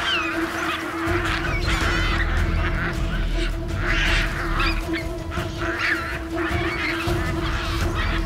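Baboons screaming during a troop fight, a series of harsh shrieks at irregular intervals, over a music score with a steady low drone.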